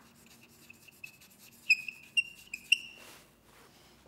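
Chalk writing on a blackboard: light scratching strokes with several short, high squeaks, the loudest bunched together in the second half.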